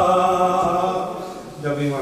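A man's chanted recitation holding one long note that fades out, then he starts speaking near the end.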